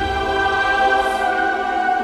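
Cinematic choral music: a choir holding a sustained chord, with a low rumble beneath it that fades in the first second.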